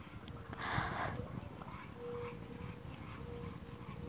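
A dog making pig-like noises, with a short noisy burst about a second in.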